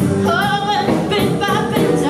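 A woman singing live R&B blues, holding wavering notes, backed by a band of electric guitar, electric bass and drums.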